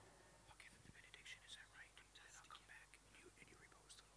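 Near silence with faint whispering: soft, broken bits of whispered speech.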